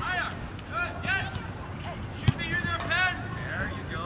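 Children calling out across a soccer pitch in short, high-pitched shouts, with one sharp thud of a soccer ball being kicked a little past halfway.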